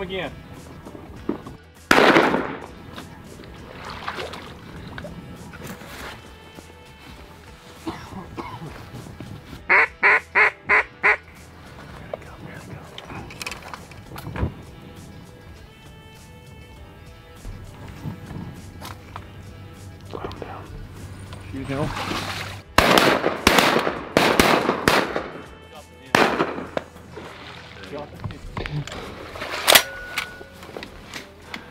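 A string of five loud, evenly spaced duck quacks in quick succession about ten seconds in. There is a loud sharp bang about two seconds in, and a cluster of loud bangs and noises near the end.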